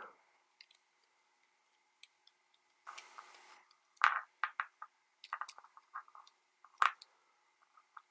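Small plastic clicks and rubbing as fingers work a micro quadcopter's 4-in-1 ESC board loose from its plastic stack cage. A short rustle comes about three seconds in, then a scatter of sharp clicks, the loudest about four seconds in.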